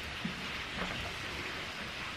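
A low, steady hiss of background room noise with no distinct sound event, between bursts of talk.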